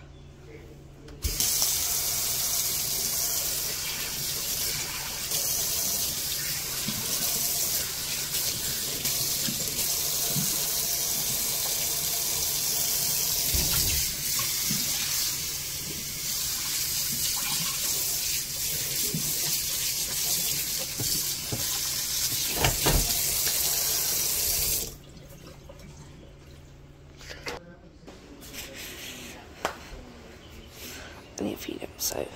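Kitchen tap running full into a stainless steel sink, washing coffee grounds toward the drain. It is turned on about a second in and shut off abruptly a few seconds before the end, with a couple of sharp knocks while it runs.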